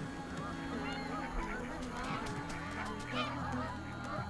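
A large flock of domestic ducks quacking, many calls overlapping into a continuous chorus, over a low steady drone.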